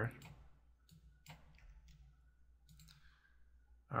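Several faint computer mouse clicks, spaced irregularly, as a material is dragged and dropped onto objects in 3D software.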